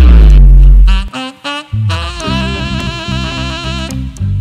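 Live band music: a heavy low accent held for about a second opens, then a short break, then a saxophone line with vibrato over bass and drums from about two seconds in.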